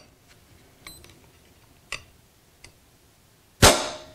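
A few faint clicks, then near the end one loud, sharp snap with a brief ring as the EDgun Leshiy air pistol's trigger breaks under the pull of a trigger-pull gauge.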